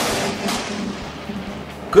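A very close thunderclap during heavy rain: a sharp crack right at the start and a second crack about half a second later, then a rumble that slowly dies away.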